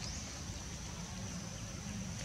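Steady outdoor background: a low rumble like wind on the microphone, with a thin, steady high whine above it and no sharp or distinct events.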